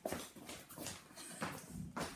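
A shichon puppy making several short, quiet vocal sounds in quick succession while it plays.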